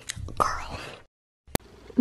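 A young girl whispering close to a microphone, cut off about a second in. A short silence follows, then a single sharp click.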